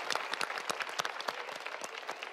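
Studio audience applauding, a dense patter of claps that slowly tapers off.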